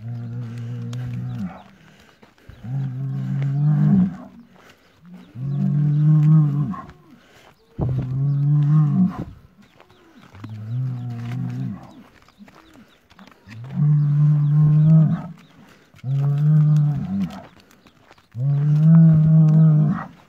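A bull mooing over and over, eight deep calls of a second or so each, one every two to three seconds.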